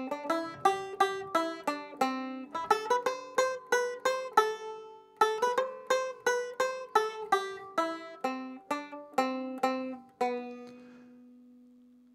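Solo banjo playing a quick plucked instrumental outro of single notes, ending about ten seconds in on a last note left to ring out and fade.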